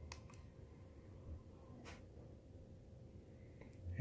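Near silence: low room tone with a few faint, sharp clicks from a handheld electric-skateboard remote being handled and its buttons pressed.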